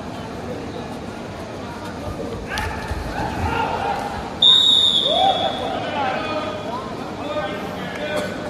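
A referee's whistle blown once about halfway through: a single sharp, high blast of about a second that falls slightly in pitch at the end, just after a tackle. Shouting voices of players and spectators run around it.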